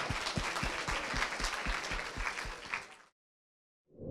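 Audience applauding with many overlapping claps, cut off suddenly about three seconds in.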